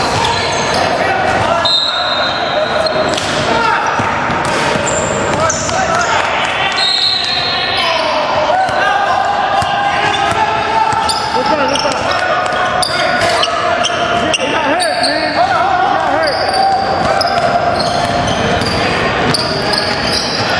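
Basketball game in a large, echoing gym: a basketball bouncing on the hardwood floor, short high shoe squeaks and players' voices calling out.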